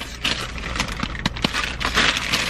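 Plastic courier mailer bag crinkling and rustling as it is handled, with many small sharp crackles.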